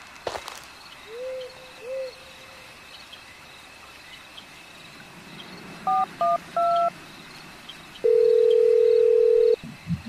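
Two owl hoots about a second in, over faint night insects. Near the middle comes three short phone keypad (DTMF) beeps as a number is dialled, then a single steady phone tone lasting about a second and a half.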